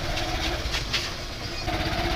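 Small motorcycle-type engine running steadily, heard from the passenger seat while riding along a street.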